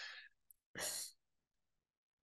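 A man's short sigh, breathed out into the microphone about a second in, just after the end of a spoken phrase; the rest is near silence.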